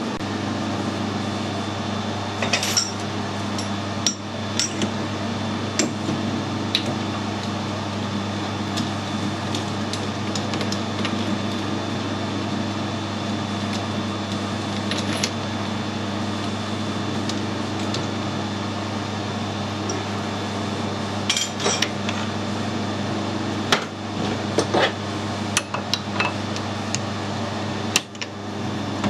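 Scattered metallic clinks and knocks as a lathe's three-jaw chuck, chuck key and die holder are handled, with a busier cluster near the start and another about three quarters of the way in, over a steady low hum.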